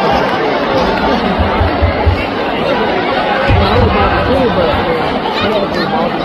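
Arena crowd chatter, many voices talking over one another close to the microphone, in a large hall, with a few low thumps.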